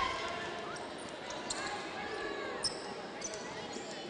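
Faint basketball-game court sound: a basketball dribbled on the hardwood floor, a few brief sharp squeaks, and distant voices across the arena.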